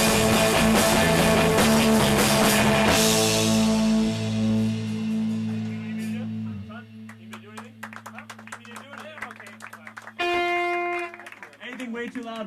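Rock band with electric guitars and a drum kit playing loud, then stopping about three seconds in. The last chord rings on and fades out over a few seconds, followed by scattered clicks, a short held note and some talk.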